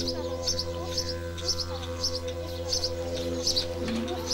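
A small bird chirping in a regular repeated pattern, about two short high chirps a second, over a steady droning tone.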